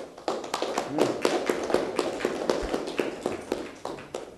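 Small audience applauding, many separate hand claps that die away near the end.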